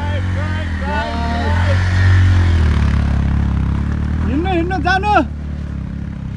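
A motorcycle engine running at low revs as the bike passes close by on a rough gravel road, loudest about two seconds in. A person's voice calls out over it twice.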